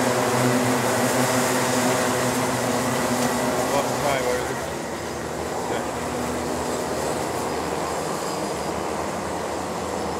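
A pack of Rotax Micromax 125cc two-stroke kart engines running at race pace: a steady, many-toned drone that weakens about halfway through as the karts pull away.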